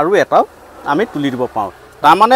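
Honeybees buzzing around the hives, heard under a man's speaking voice.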